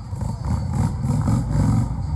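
Motorcycle engine revving loudly in a few pulses, dropping back at the end.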